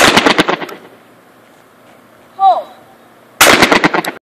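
Two shots from a Winchester 12-gauge semi-automatic shotgun, fired at clay targets about three and a half seconds apart. Each shot is very loud and rings out for over half a second.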